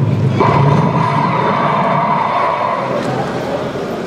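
Busy tournament-hall hubbub of many people, with a steady high tone lasting about two and a half seconds.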